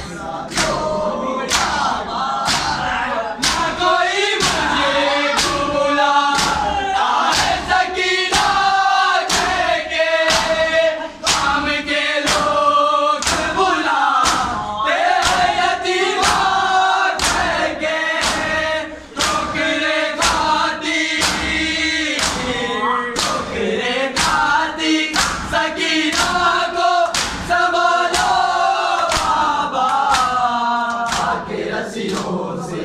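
A men's group chanting a noha (Urdu lament) in unison, with matam: many hands striking bare chests together in an even beat, a little more than one stroke a second, keeping time with the chant.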